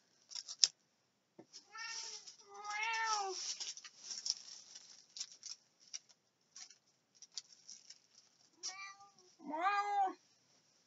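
Domestic cat meowing: two meows about two seconds in, the second long and drawn out, and two more near the end, with light rustling and clicks of handled items in between.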